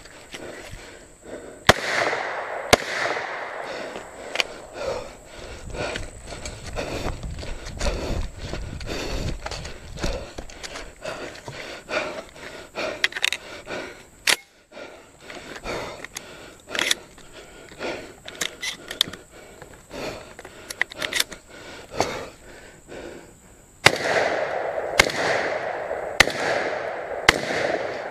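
AR-15 carbine shots with a ringing echo among the trees: two about a second apart near the start, then about four in quick succession near the end. In between, scuffing footsteps and small clicks and rattles as the shooter moves.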